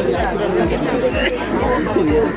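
Several onlookers' voices talking over one another and urging a rolling golf putt toward the hole, with a low pulse about four times a second underneath.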